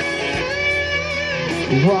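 Live rock band playing a slow ballad, guitar to the fore in a short instrumental gap between sung lines, the voice coming back in at the very end.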